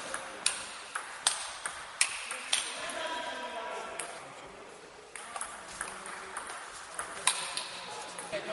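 Table tennis ball clicking sharply off rackets and the table in a fast rally, about five hits in the first two and a half seconds, until the point ends. A few scattered clicks follow later, with voices in the hall.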